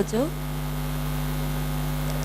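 Steady electrical mains hum in the stage sound system: an even low buzz made of a few fixed tones that does not change.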